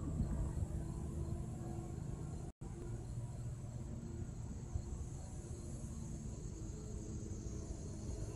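Steady low outdoor rumble with a faint, steady high insect drone above it. The sound cuts out completely for an instant about two and a half seconds in.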